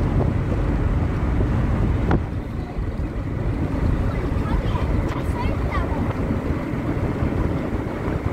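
Steady low rumble of a car driving along a road, heard from inside the car, with wind buffeting the microphone.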